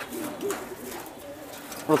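Domestic pigeons cooing low in their wire cages, with a short coo about half a second in.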